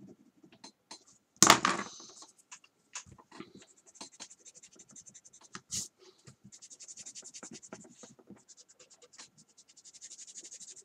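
Drawing on paper: scattered strokes of a metal pen, a single sharp knock about a second and a half in, then a Palomino Blackwing graphite pencil scratching across the paper in rapid short strokes through the second half.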